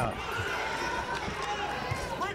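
Arena crowd at a boxing match: many voices shouting and chattering together over a steady background hum of the hall, with a dull thump near the end.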